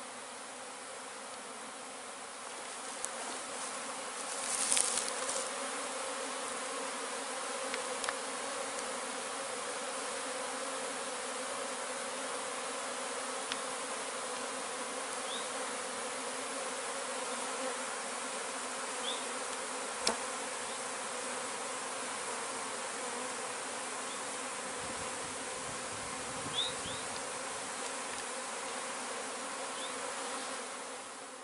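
A swarm of honey bees buzzing around an open hive box, a dense, steady hum that swells about two seconds in. A couple of brief knocks and a few faint, short high chirps sound over it.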